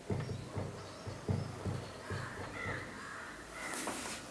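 Dry-erase marker squeaking against a whiteboard in a run of short, pitched squeaks, one per pen stroke, as words are written.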